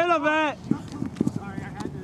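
A loud, drawn-out shout from a person on the sideline that rises and falls in pitch, followed about a second in by a few quick, sharp taps.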